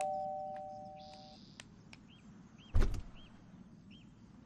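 Two-note electronic doorbell chime holding its notes and cutting off about a second and a half in; then a single short thump near three seconds in as the front door is unlatched and opened.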